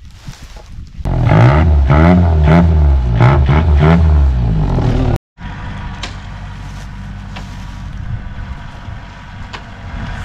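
A 90-horsepower Mangkorn Thong engine of an E-taen farm truck revving hard, its pitch rising and falling several times. After an abrupt cut it settles into a steady, quieter idle.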